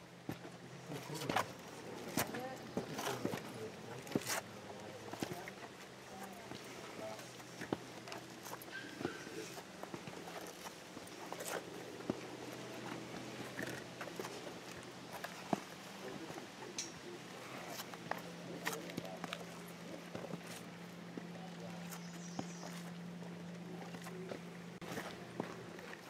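Footsteps going down stone steps: irregular scuffs and taps, with a faint steady low hum underneath.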